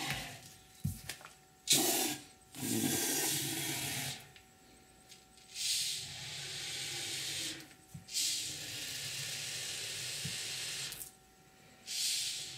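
A can of Great Stuff polyurethane expanding foam spraying into a hollow statue in four bursts, with short pauses between them. The longest burst, near the end, lasts about three seconds.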